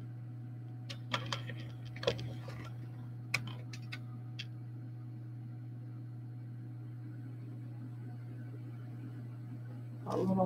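A few light clicks and taps in the first half as a hard cast-resin piece is handled in the fingers, over a steady low electrical hum that then continues alone.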